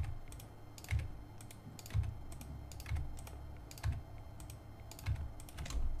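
Computer mouse buttons and keyboard keys clicking one at a time, roughly once a second, some clicks with a dull knock.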